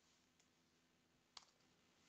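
Near silence with a single faint click about one and a half seconds in: a computer keyboard key press.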